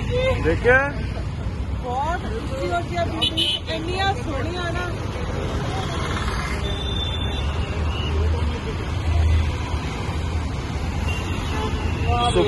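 Busy city road traffic: a steady low rumble of passing cars, motorbikes and trucks, swelling as a heavier vehicle goes by near the end, with a short horn toot around the middle.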